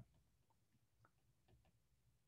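Near silence, with a few faint, sparse ticks of a stylus tapping on a tablet's glass screen as it writes.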